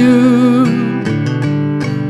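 Martin D-18 acoustic guitar strummed on a C chord. A sung note is held with vibrato for the first half-second or so, then the guitar rings on alone.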